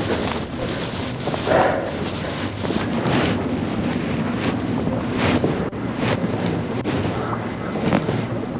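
Steady rushing noise with rustling and scattered soft knocks, like wind or fabric rubbing on a microphone.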